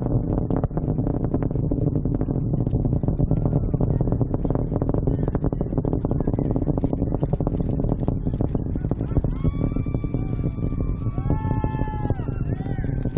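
Rocket engines heard from the ground during ascent: a deep, continuous rumble with a ragged crackle. In the last few seconds, high, drawn-out whoops from onlookers rise over it.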